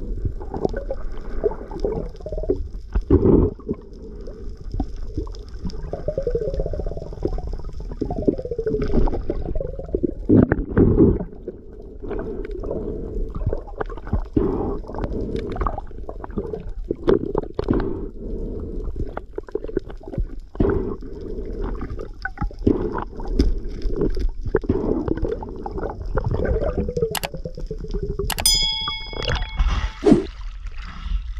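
Underwater sound picked up by an action camera in its waterproof housing: a muffled low rumble of moving water, broken by irregular clicks and knocks. A brief ringing tone sounds near the end.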